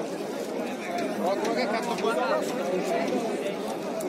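Background chatter of several people talking at once, with no single voice close to the microphone.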